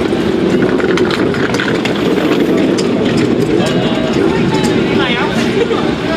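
Several people talking at once nearby, the words indistinct, with scattered clicks and knocks over the voices.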